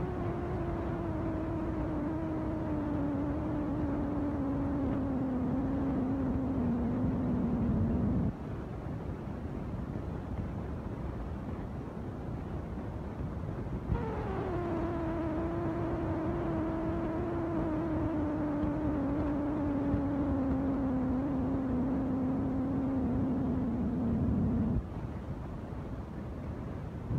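A motor-driven machine runs twice, a humming tone that sinks slowly in pitch and cuts off suddenly each time. The first run lasts about eight seconds. The second starts about halfway through, higher at first, and runs for about eleven seconds.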